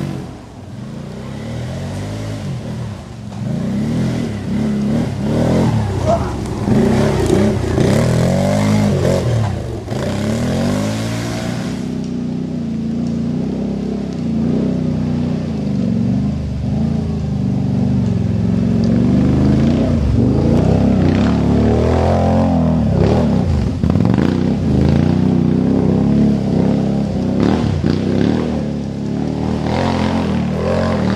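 Quad bike (ATV) engines revving up and down as the machines ride a rough dirt track, the pitch rising and falling over and over.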